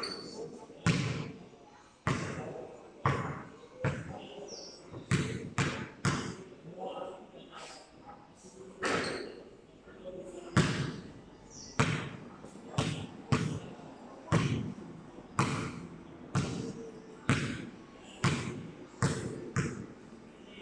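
A basketball bouncing repeatedly on a concrete court, sharp impacts roughly once a second with a short echo after each under the high metal roof.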